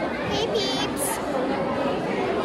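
Indistinct chatter of several voices.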